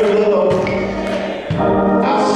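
Church choir singing held notes with organ accompaniment, briefly easing about a second and a half in before the next phrase.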